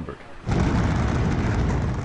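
Building implosion: the demolition charges in a high-rise hotel go off with a sudden loud boom about half a second in, which carries on as a heavy, deep rumble.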